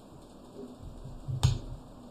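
A single sharp click at a computer desk about one and a half seconds in, with soft low thuds around it.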